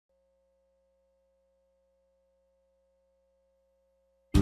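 Near silence, with a very faint single steady tone and a faint low hum under it.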